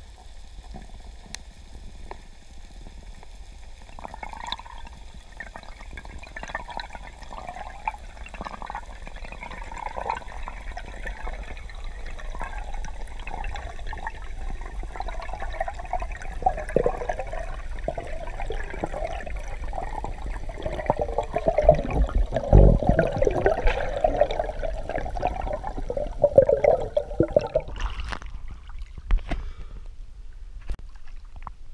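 Muffled underwater sound of water gurgling and rushing around the camera as a freediver swims up a buoy line, growing louder toward the end with a few dull low knocks, then falling away shortly before the surface.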